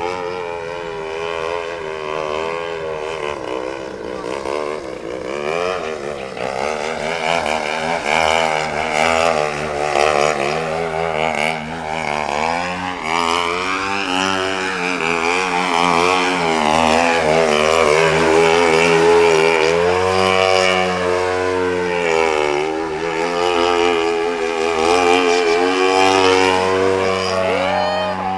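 Gasoline-engined radio-control model airplane flying, its engine note rising and falling in pitch as it swoops and passes, with a big sweep up and down about halfway through. It grows louder toward the second half.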